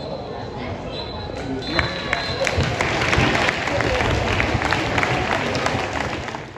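Referee's whistle blown three times for full time, the last blast the longest, followed by a spell of scattered clapping and voices from the small stadium crowd.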